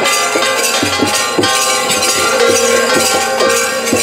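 Hand bells ringing continuously during an aarti lamp offering, over regular low beats, about three a second.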